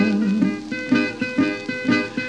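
Old 1934 country blues recording: acoustic guitar plays a short run of plucked notes between sung lines. The last sung note fades out in the first half-second.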